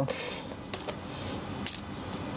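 Draughts pieces being moved and set down on the board, giving a few light clicks; the sharpest comes a little after a second and a half in.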